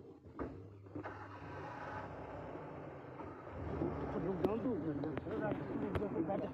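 A low steady hum of a vehicle engine idling, with people's voices talking over it from about halfway through.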